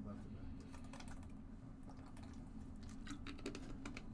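Faint scattered light clicks and taps over a low steady room hum, the clicks grouped near the start and again about three seconds in.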